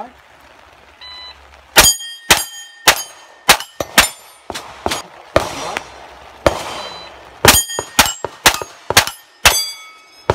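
A shot timer's start beep about a second in, then a rapid string of about a dozen shots from a Sig MPX 9mm pistol-caliber carbine, roughly one every half second. Most shots are followed by the high ring of a steel plate being hit.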